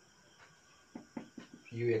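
Marker pen writing on a whiteboard: a few short separate strokes in the second half, then a man's voice starting a word near the end.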